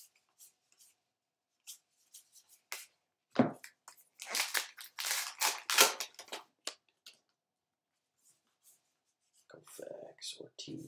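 A Topps Archives baseball card pack wrapper being torn open and crinkled by hand for about two and a half seconds, starting about four seconds in, after a single thump. Light clicks of cards being handled come before it.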